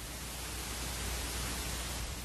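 Steady hiss with a low hum underneath: background noise of an old analogue videotape recording, with no programme sound over it.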